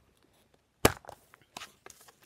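A clear plastic storage case being handled: one sharp plastic snap a little under a second in, then a few faint clicks and rustles.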